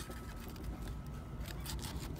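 Soft clicks and scraping of a small fillet knife working around the cheek of a striped bass, with a few faint clicks near the end, over a low steady rumble.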